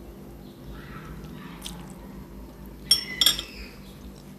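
Faint chewing of spaghetti with the mouth closed, then a metal fork set down on a ceramic plate about three seconds in: two light clinks with a short ring.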